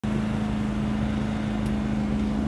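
A steady machine hum holding one strong low pitch without change, from equipment running in a food trailer.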